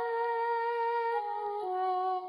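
Background film music: a wordless hummed vocal melody of long held notes, stepping down in pitch.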